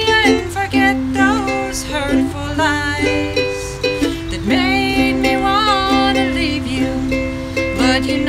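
Ukulele strummed in chords under a woman singing a country song: two sung phrases with a short break about halfway through.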